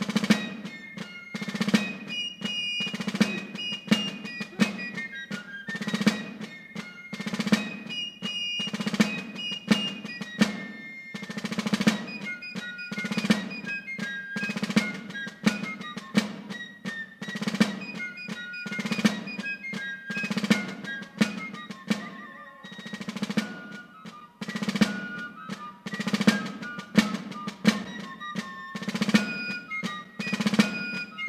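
Fife and drum corps playing a march: a high fife melody over snare drum rolls and a steady bass drum beat.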